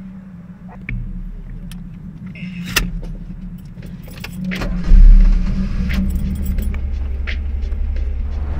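Keys clicking and jangling in the ignition of a classic Alfa Romeo Spider, then its engine cranking and firing about five seconds in, with a loud burst as it catches, then settling into a steady low running sound.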